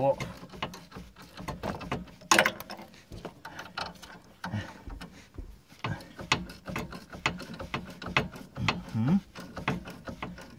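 A spanner turning the threaded rod of a coil spring compressor on an SUV's rear coil spring: a run of small, irregular metal clicks, with one louder clack a little over two seconds in. The compressor is being taken up a little at a time to squeeze the spring evenly.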